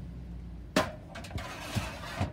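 A long awning pole being slid back into an RV basement storage compartment: a sharp knock less than a second in, then a scraping slide with a few small knocks.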